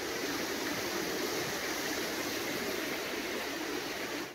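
Indoor artificial waterfall fountain: water falling steadily into its pool, an even rushing hiss with no breaks.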